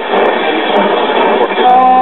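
Circa-1947 GE five-tube AM radio being tuned across the dial: a noisy hash between stations, then about a second and a half in a station playing music comes in with steady held notes. The speaker, its cone patched and its voice coil dragging, sounds a little raspy.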